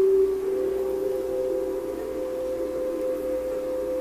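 A sustained drone tone of background music, stepping up to a slightly higher note about half a second in and then held steady.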